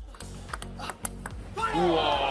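Table tennis ball struck back and forth in a fast rally, about six sharp clicks off the bats and table in the first second and a half. A voice and music come back in near the end.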